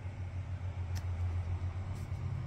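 Steady low hum of a running machine, with a faint click about a second in.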